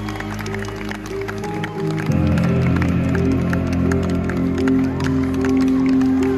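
Live rock band music played loud through a concert PA: long held keyboard chords that change to a louder, fuller chord about two seconds in.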